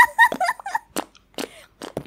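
Lip pops made with the mouth, a handful of short wet pops spread over the two seconds that sound like a fart, mixed in the first second with short high-pitched voice squeaks like giggling.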